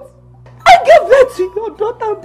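A woman's voice shouting loudly in a sharp, high-pitched outburst, starting after a brief lull about two-thirds of a second in and running on in several rising and falling syllables.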